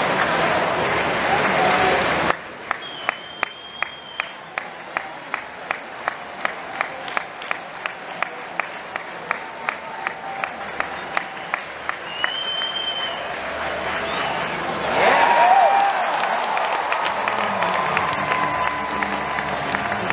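Baseball stadium crowd: applause for the first two seconds, then steady rhythmic clapping at about three claps a second for roughly ten seconds, with a short whistle twice. About fifteen seconds in the crowd cheers, with voices over it; the board reads strikeout.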